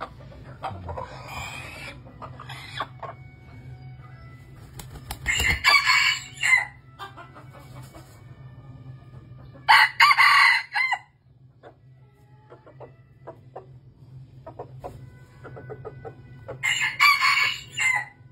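Red junglefowl rooster crowing: three loud crows, each about a second long and five to seven seconds apart, with a fainter crow about a second in.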